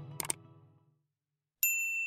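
Intro music fades out under two quick clicks, then a bright, ringing ding from a notification-bell sound effect sounds about one and a half seconds in. It holds steady for about a second and cuts off abruptly.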